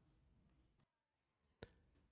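Near silence, with a single faint click about one and a half seconds in.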